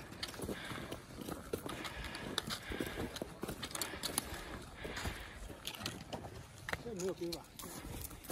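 Hikers' footsteps crunching on snow-covered steps, with irregular clicks and knocks throughout. Faint voices come in near the end.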